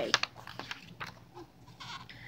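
A paper book page being turned: a few short rustles and crackles of paper in the first second, then faint handling.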